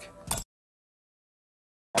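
A short sound in the first half second, then the audio cuts to dead silence for about a second and a half. Right at the end a loud burst of explosion noise starts abruptly.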